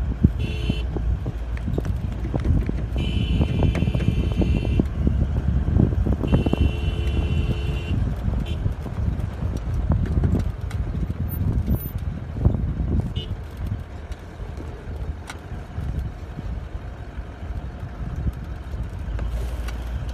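Off-road vehicle running across rough desert ground: a continuous low rumble with crackles and gusts, the sound of wind on the microphone mixed in. A few short high-pitched sounds, each lasting a second or two, come through about three and six seconds in.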